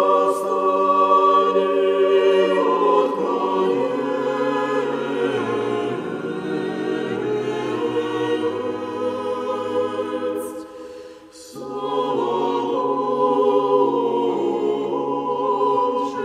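Church choir singing Russian Orthodox chant a cappella: held chords move slowly while the bass line steps downward. A brief pause for breath comes about 11 seconds in, and then the choir sings on.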